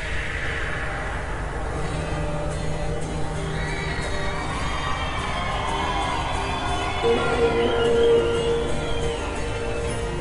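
Live acoustic guitar strumming the opening of a slow song over held low notes, with crowd noise underneath. A louder sustained note comes in about seven seconds in.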